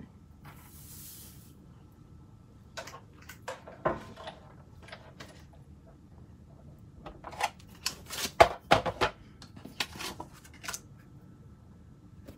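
Handling of craft tools and paper on a tabletop while setting up a Big Shot die-cutting machine. There is a brief rustle near the start, then scattered clicks and knocks as metal dies, cardstock and the machine's plastic cutting plates and magnetic platform are picked up and set down. The loudest knock comes about two thirds of the way in.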